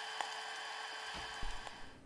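Hot air popcorn popper running: a steady blowing hiss from its fan, with a few faint ticks. It cuts out near the end.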